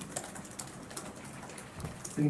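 Scattered, irregular light clicks of computer keyboard typing over faint room noise.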